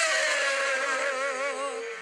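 A woman singing one long held note with vibrato into a microphone, fading slightly near the end.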